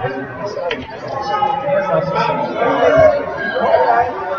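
Background chatter: several people talking at once, echoing in a large hall.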